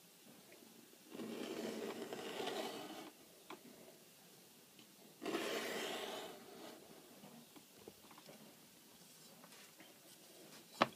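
Sharp Stanley knife blade drawn along a metal ruler, slicing through leather in two cutting strokes, the first about a second in and lasting about two seconds, the second about five seconds in and lasting about a second and a half.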